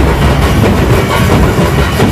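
A group of large double-headed drums beaten with sticks, playing a fast, dense, continuous rhythm.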